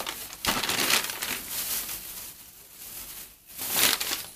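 Thin plastic carrier bag crinkling and rustling as it is handled and twisted shut around a paper packet. It is loudest in the first two seconds, quieter after, and rises again just before the end.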